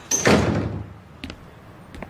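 A door pushed shut hard: one loud bang just after the start that dies away within about half a second, followed by a few faint clicks.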